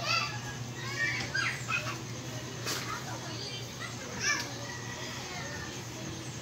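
Children's voices calling out in the background in short high-pitched bursts, with a single sharp click about halfway through and a steady low hum underneath.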